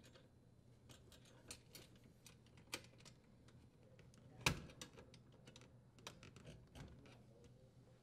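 Faint, scattered small clicks and taps as hands work wires and a metal strain relief locknut into a dishwasher's electrical bracket, with one louder click about four and a half seconds in as a screwdriver works the nut.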